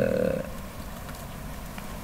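A man's brief drawn-out vocal hesitation sound, held on one pitch and ending about half a second in, followed by quiet room tone through the desk microphones.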